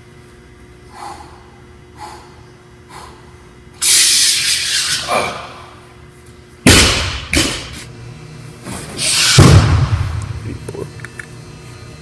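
Heavy barbell power cleans with rubber bumper plates. About four seconds in there is a loud forceful exhale as the bar is pulled. Near seven seconds the bar is dropped onto the floor with a heavy thud and a smaller second knock. Another loud exhale follows and ends in a heavier low thud near the end.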